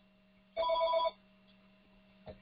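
A short electronic ringing tone, like a telephone ring, about half a second long and starting about half a second in, with several steady pitches at once, over a faint steady hum.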